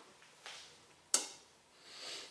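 A man's soft breath, then a short, sharp sniff through the nose just past a second in, the loudest sound.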